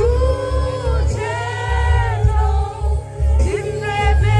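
Loud live concert music heard from within the crowd: a sung melody with long held and gliding notes over a heavy, pulsing bass beat.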